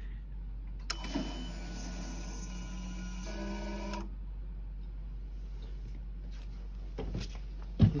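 Electric fuel pump in a Mercruiser 6.2 MPI's Cool Fuel Module running for about three seconds after the ignition is switched on, then stopping suddenly: the pump priming the fuel rail up to pressure. A click comes just before it starts, and its pitch steps up shortly before it stops.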